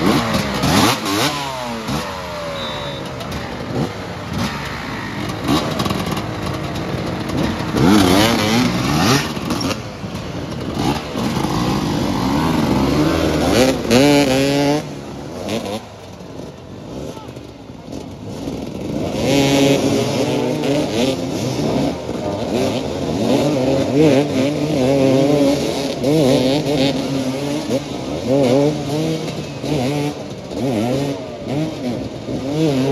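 Several motoball motorcycles revving up and down at close range, their engine pitch rising and falling over and over. They grow quieter for a few seconds around the middle, then rev hard again.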